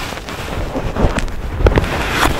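Clothing rubbing and knocking right on the microphone of a chest-worn camera as it is handled and taken off, with a few sharp knocks in the second half.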